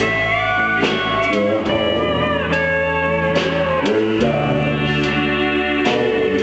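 Live country band playing an instrumental break, led by a pedal steel guitar with sliding, sustained notes over electric bass and drums.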